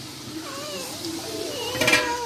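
A cat meowing in the background, a few short wavering calls, with a louder call near the end.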